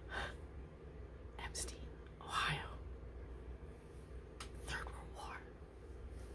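A woman's soft breaths and faint whispered sounds, a handful of short breathy puffs spread over a few seconds, over a low steady room hum.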